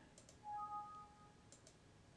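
Near silence with a few faint computer mouse clicks, one near the start and a couple about a second and a half in. About half a second in, a faint, brief two-note steady tone sounds.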